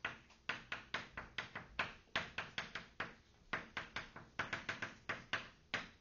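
Chalk writing on a blackboard: an irregular run of sharp taps and short scrapes as the letters are written, about three or four strokes a second.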